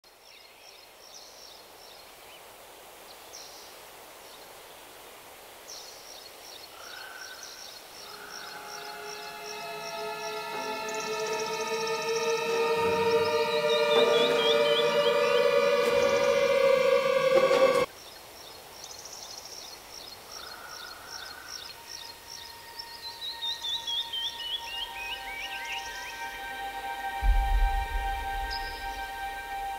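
Repeated high bird trills over a suspenseful film score. Layered sliding tones swell steadily louder and cut off abruptly about two-thirds of the way in. Then a run of falling tones and held notes builds again, with a short low boom near the end.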